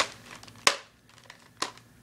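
Handling noise close to the microphone: three sharp clicks, unevenly spaced, with faint rustling between them.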